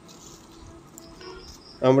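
Faint steady insect chirring, like crickets, with a thin high tone that is clearest a little past the middle; a man's voice starts just before the end.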